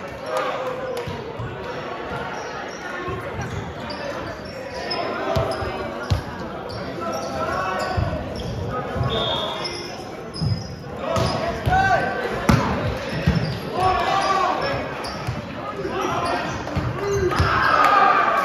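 Echoing gym noise during a volleyball game: players' voices calling out, short high squeaks of sneakers on the hardwood court, and a few sharp thuds of a ball, one about six seconds in and another about twelve and a half seconds in.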